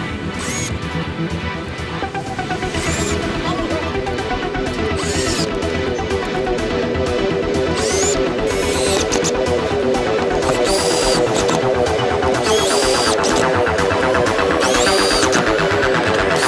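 Electronic background music with a rising sweep that builds toward the end.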